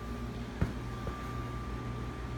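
Steady background hum with a thin, high steady whine and one short click about half a second in.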